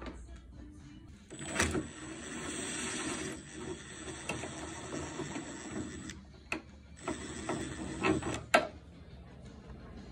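Makita 18V cordless impact driver with a 10 mm socket on an extension backing out a bolt, running in two bursts: a long one of about five seconds, then a shorter one of about a second and a half after a pause.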